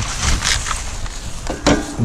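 Butcher paper rustling and crinkling as a paper-wrapped brisket is pressed down onto a metal grill grate, with a sharper crackle about one and a half seconds in.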